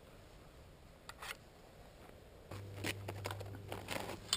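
Faint rifle handling: two sharp metallic clicks a little after one second in, then from halfway on a quick run of clicks, rustling and scuffing steps as the rifle is carried toward the camera, over a low steady hum.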